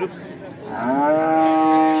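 Cattle mooing: one long, loud moo that starts just over half a second in, rising briefly and then held steady.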